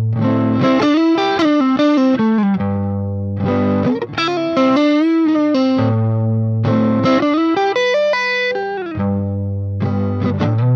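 Stratocaster-style electric guitar playing a riff in a light crunch tone, with the wah pedal disconnected from the signal chain. The riff repeats three times, each pass a held low note followed by a run of notes that climbs and falls.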